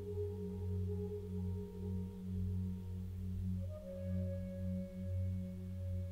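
Soft ambient meditation music of sustained drone tones, the low ones gently swelling and fading, with a new higher tone coming in about halfway through.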